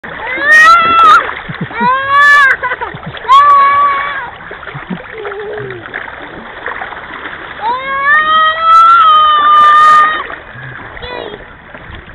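A toddler making high-pitched wordless calls, five in a row, the longest lasting about two seconds near the end, with water splashing around her between the calls.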